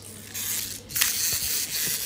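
Battery-powered toy soldier switched on and sounding its shooting effect: a harsh, steady hiss that starts about a third of a second in and gets louder at about one second.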